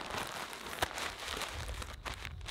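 A thin, cheap plastic shower cap crinkling as it is pulled down over the hair and adjusted by hand, with one sharper crackle a little under a second in.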